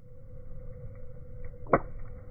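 A wood fire burning in a fire pit: a low rumble under a steady hum, with one sharp, loud pop near the end.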